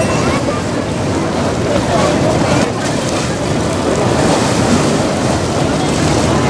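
Fast-flowing, churning river water rushing and splashing against the stone steps, a steady loud noise, with wind buffeting the microphone.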